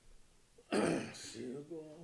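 A man clears his throat with a loud, rough rasp in two quick parts about two-thirds of a second in, then short bits of his voice follow.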